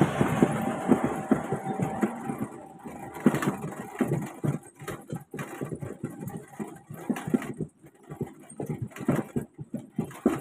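Wheeled street-vendor pushcart rattling and clattering in short irregular knocks as it is pushed along a concrete street. A motor vehicle going by fades out over the first couple of seconds.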